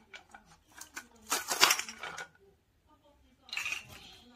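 Hard plastic toy food pieces and a plastic toy knife clicking and clattering against a plastic cutting board: scattered light clicks, with a louder run of clatter about a second and a half in and another near the end.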